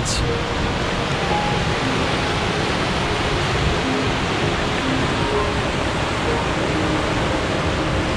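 Steady rush of fast river rapids running over a rocky, stair-stepped chute.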